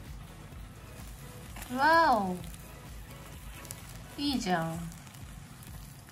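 Takoyaki batter sizzling faintly on an electric takoyaki cooker, with two short vocal exclamations: the first about two seconds in rises and then falls in pitch, and a shorter falling one comes a couple of seconds later.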